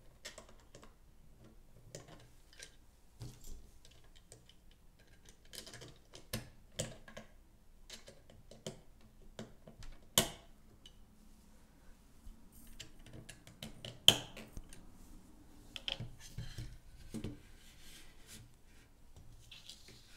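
Scattered light clicks and taps of 3D-printed plastic parts being handled while a screw is turned with a long hex key, with two sharper clicks about ten and fourteen seconds in.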